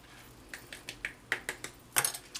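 Quick run of light, sharp taps and clicks, about nine in a second and a half, starting half a second in and getting louder, the last the loudest: a glue-and-glitter-coated card being knocked against a plastic tub of Dazzling Diamonds glitter to shake off the excess.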